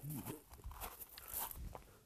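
Faint, irregular crunching footsteps as a person walks.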